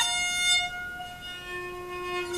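Kamancha, the skin-faced Azerbaijani spike fiddle, holding a long bowed note that fades about half a second in. A softer, lower tone rings on near the end, in a pause of the mugham improvisation.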